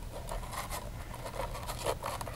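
Faint rubbing and scraping of hands handling a homemade tube telescope on its tripod, with a few light clicks, over a low steady hum.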